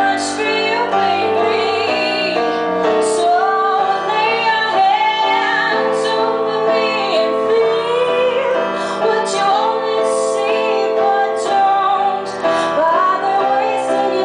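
A woman singing live into a microphone, holding long wavering notes, over a keyboard accompaniment.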